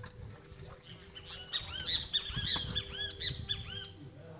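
A bird calling: a rapid run of short, high, arching chirps, about four a second, starting about a second in and stopping just before the end.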